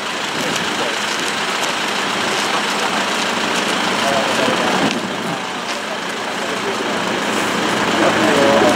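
Steady, loud outdoor noise with no clear single source, and faint voices of people talking about four seconds in.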